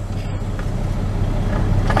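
Semi truck's diesel engine running, heard from inside the cab as a steady low hum.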